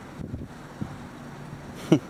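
Steady wind noise on the microphone over outdoor background hiss, with a brief loud sound just before the end.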